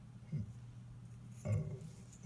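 Quiet room tone with a steady low hum, broken by two short, faint vocal sounds like hesitation noises: one about a third of a second in and one near the end.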